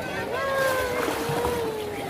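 A voice holding a long, slowly falling note over the steady background hubbub and water noise of a crowded swimming pool.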